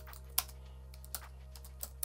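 Typing on a computer keyboard: a handful of separate key clicks at an uneven pace, over a faint steady low hum.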